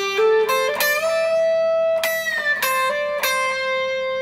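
Stratocaster-style electric guitar playing a single-note lead phrase: a few quick notes with a hammer-on, then a note bent up a full step, held and released about two seconds in, and a final note left ringing.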